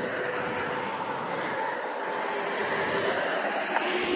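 Steady drone of distant engine noise: an even rushing sound with a faint hum held at one pitch.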